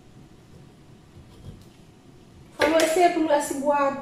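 Quiet room tone for the first two and a half seconds, then a woman's voice starts speaking loudly and carries on to the end.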